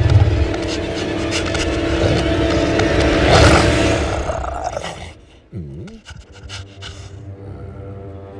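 A werewolf's loud roar swelling to a peak about three and a half seconds in, over a tense film score. The sound drops away sharply after about five seconds, with a brief low swooping sound, then the score returns with sustained notes.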